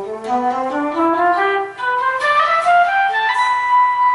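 Electric guitar played through a guitar synthesizer, running a scale upward note by note in a three-notes-per-string fingering and ending on a long held high note.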